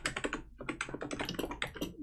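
Fast typing on a computer keyboard: a quick run of keystrokes, with a brief pause about half a second in.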